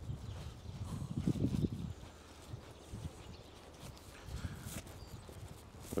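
Footsteps on a wet, slushy pavement of melting snow, walking at a steady pace.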